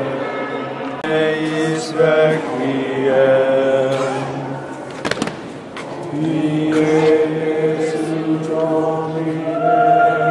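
Choir chanting in sustained, overlapping voice lines over a steady low held note. The voices break off briefly with a sharp click about five seconds in, then resume.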